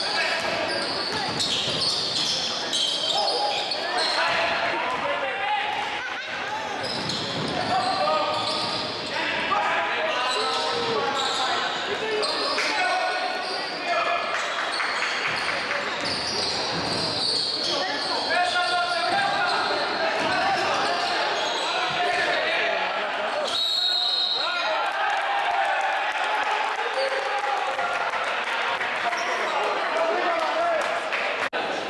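Live sound of an indoor basketball game: the ball bouncing on the court amid the voices of players and spectators, echoing in a large gym.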